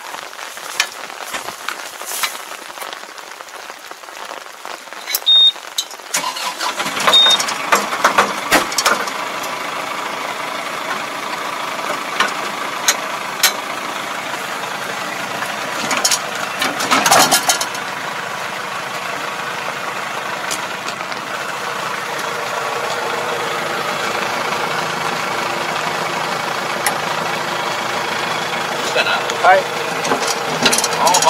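A tractor's engine starts about six seconds in and keeps running steadily, with a brief louder surge around the middle. Before it starts there are only scattered clicks and knocks.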